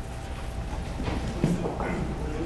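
Faint speech away from the microphone in a large room over a steady low hum, the voice coming in about halfway through.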